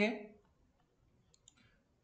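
The end of a man's spoken word, then near silence broken by two or three faint clicks about one and a half seconds in.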